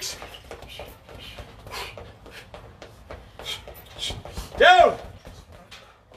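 Quick, irregular thuds and slaps of feet running in place with high knees during a boxing cardio drill, with hard breathing and one loud shouted 'ha' about three-quarters of the way through.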